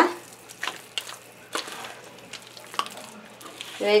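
Wet masa dough being squeezed and mixed by hand with chicken broth in a metal pot: faint, irregular wet squelches and small clicks.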